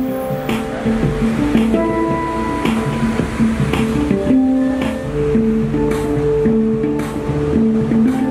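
A steel handpan played in a slow melody: struck notes that ring on, over long held tones and a steady low rumble.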